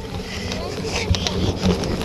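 Wind buffeting an action-camera microphone with a low rumble, and a mountain bike rattling over a bumpy dirt trail with a few sharp clicks about a second in.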